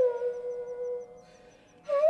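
Carnatic bamboo flute (venu) in Raga Ranjani, sliding down onto a low note and holding it before it fades out a little past the middle. After a short breath-length gap, the next phrase starts at the very end.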